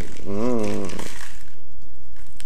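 Crispy fried-batter crumbs (kremes) being shaken from a small paper packet onto a plate of fried chicken, a light rustle after a brief spoken word, over a steady low hum.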